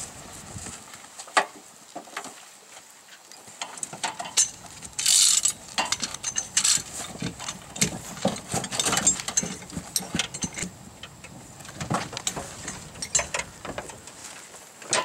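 Metal hand tools and rescue gear clanking, clicking and knocking against a wrecked car at the start of a vehicle extrication, with a short harsh burst about five seconds in.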